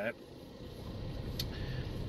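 Low steady rumble like a vehicle running, growing slightly louder, with one faint click about one and a half seconds in.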